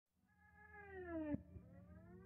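Opening of a background music track: a sliding tone fades in and glides down in pitch over a low steady hum, breaks off about a second and a third in, and a second tone starts to rise near the end.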